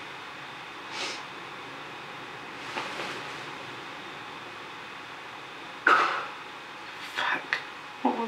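A quiet room with a low steady hum, broken about six seconds in by a sudden loud noise that fades within half a second, then a few short sharp sounds near the end.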